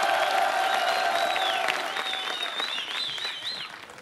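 Studio audience applauding and cheering, with long whistles over the clapping; the applause dies down near the end.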